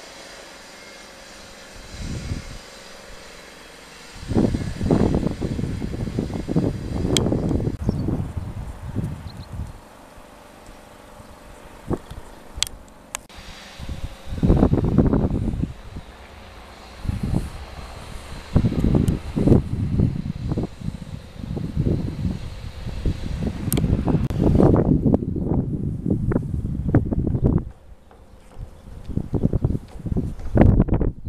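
Wind buffeting the camera microphone in uneven gusts: low rumbling blasts that come and go, the first about four seconds in, with a few sharp clicks between them.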